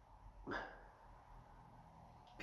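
One short sniff into a glass of beer held at the nose, smelling the aroma, about half a second in. Otherwise near silence.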